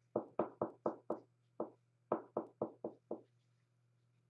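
Quick knocking, about four knocks a second, in two short runs of five with a single knock between them.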